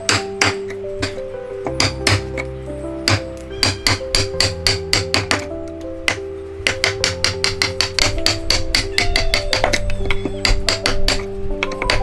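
Wood chisel being struck repeatedly to chop out a mortise in a timber beam: quick clusters of sharp knocks, several a second, with a short pause about halfway. Background music with sustained notes and a low bass plays throughout.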